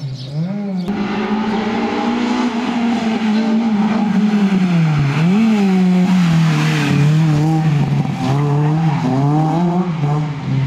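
Honda Civic Type R rally car's four-cylinder engine at high revs. Its pitch drops sharply and climbs again near the start and about halfway, with lifts and gear changes, then sags and rises again near the end. Tyres squeal briefly a little past the middle.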